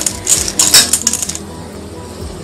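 Puffed rice mixture being tossed by hand in a stainless steel bowl: a quick run of dry rustling and clinking against the steel for about the first second and a half, then it dies down.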